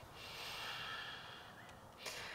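A person breathing out slowly and audibly while holding a plank, a soft hiss lasting about a second and a half and fading, with the next breath starting near the end.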